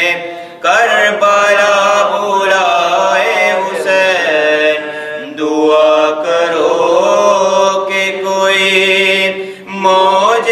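A man's voice chanting an Urdu devotional munajat in long, drawn-out, wavering notes. There is a brief breath pause about half a second in and another near the end.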